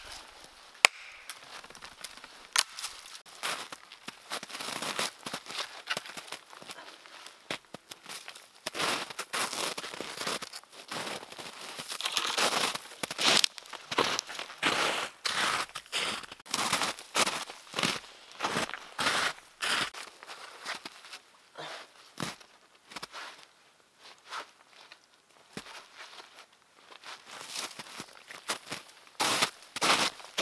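Footsteps crunching through crusted snow, with dry twigs and branches cracking underfoot, at an unhurried walking pace. Two sharp cracks sound right at the start.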